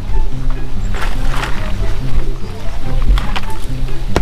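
Background music with a steady, repeating bass line, and a few short clicks late on.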